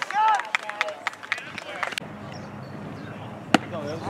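Men's voices shouting and calling out over a baseball field for about two seconds, then a quieter steady outdoor background with a single sharp crack about three and a half seconds in.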